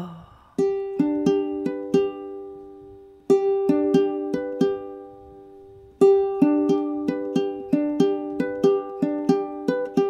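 Instrumental song intro with a toy glockenspiel struck with two mallets: ringing notes in a steady pattern, in three phrases that begin about half a second, three seconds and six seconds in.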